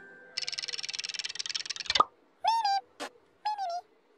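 Comic sound effects: a rapid fluttering trill for about a second and a half, a sharp pop, then two short squeaky chirps with a click between them.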